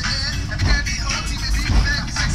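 Hip-hop music with a heavy, thumping bass beat and vocals over it.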